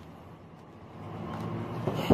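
Low outdoor traffic background with a steady low hum, growing slowly louder through the pause; a voice starts briefly at the very end.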